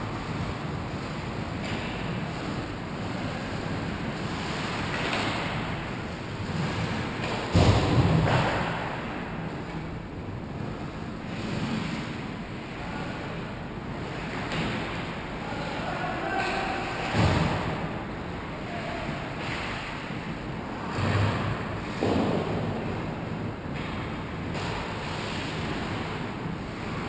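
Indoor ice hockey rink ambience picked up from behind the goal: a steady rushing hiss of skates and arena noise, broken a few times by short knocks and scrapes of sticks, puck and boards. The loudest knock comes about eight seconds in.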